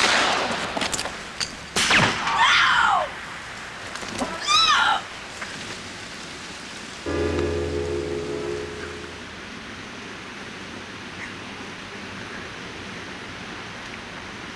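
Two pistol shots about two seconds apart, followed by two falling cries. A short held music chord comes in about seven seconds in, and after it there is only hiss.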